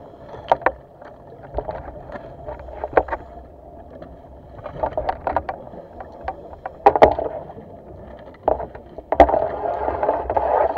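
Underwater sound on a scuba spearfishing dive: bursts of bubbling from divers' regulator exhaust, loudest near the end, with scattered sharp clicks and knocks from gear handling or the reef.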